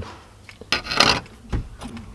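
Handling noises: a small car badge rubbed and turned in the fingers, with a few short scraping rustles around a second in and a dull thump a little later.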